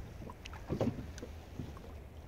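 Small boat on choppy water: quiet water sounds and wind on the microphone over a low steady hum.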